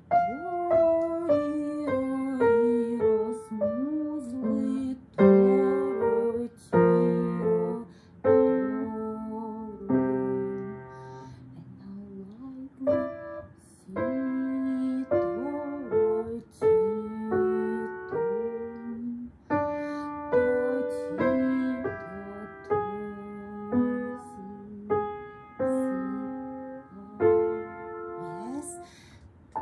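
Piano played by a young beginner: a short, slow Andante aria at a walking tempo, one note after another with a lower accompaniment beneath the melody.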